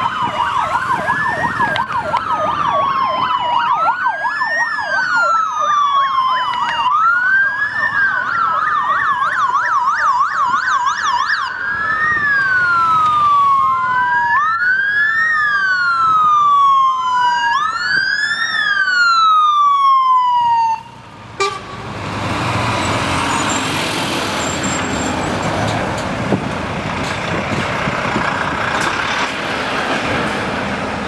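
Police escort sirens wail, several at once, each rising and falling about every one and a half to two seconds, with a fast yelp mixed in at times. The sirens cut off suddenly about two-thirds of the way through, leaving steady road-vehicle noise as lorries pass.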